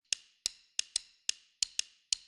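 A run of sharp, dry clicks, about four a second at slightly uneven spacing, each with a brief bright ring: a ticking sound effect for a logo intro.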